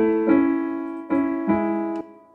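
Kurtzman K650 digital piano's piano voice sounding a slow run of notes and chords through its speakers, about four in two seconds, each ringing and fading. The sound stops suddenly at the end.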